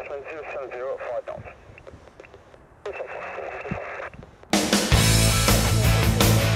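Air traffic control radio heard through an airband receiver: a narrow, tinny voice transmission, then a stretch of radio hiss. About four and a half seconds in, loud rock music starts abruptly.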